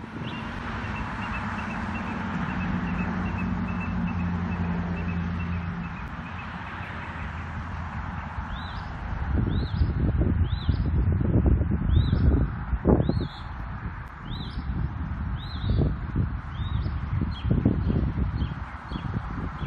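Birds singing outdoors: a rapid series of short high notes for the first few seconds, then a bird repeating a short, high, arched chirp about once a second through the second half. Under them a steady low hum fades out about six seconds in, and low rumbling bursts of wind on the microphone come and go through the second half, louder than the birds.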